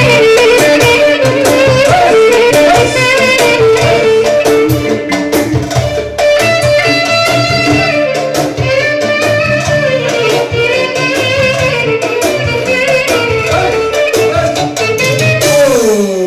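Live band playing lively dance music, a clarinet carrying an ornamented melody over keyboard and a steady drum beat.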